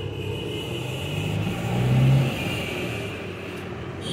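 Motor-vehicle engine sound that swells to its loudest about two seconds in and then fades, typical of a vehicle passing on the road, over a steady low engine hum.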